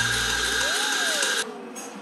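Electric espresso grinder grinding coffee beans into a portafilter with a steady motor whine. It cuts off suddenly about one and a half seconds in.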